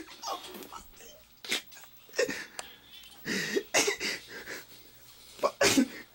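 A man's stifled, breathy laughter: short snickering bursts scattered through the few seconds, loudest near the end.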